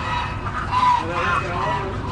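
Domestic geese honking, several overlapping calls, the loudest a little under a second in.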